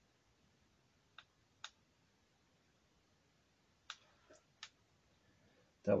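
A handful of faint, sharp clicks and taps from small items being handled on a workbench: two about a second in and three more around the four-second mark, with quiet room tone between.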